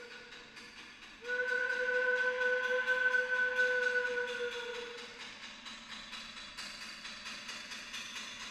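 A long, steady horn-like tone starts about a second in, holds for about four seconds and then fades away.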